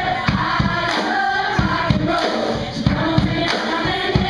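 Live band playing a song with sung vocals over a steady drum beat.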